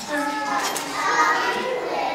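A group of young children speaking loudly together, many high voices at once.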